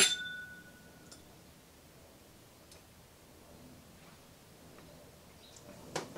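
Two glass whiskey tasting glasses clinking in a toast, a bright ring that fades within about a second. The rest is quiet room tone with a few faint small clicks.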